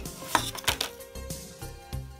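Paper leaflet and plastic being handled, with a few light knocks and clicks as a phone's back cover is moved on a desk. Background music plays under it.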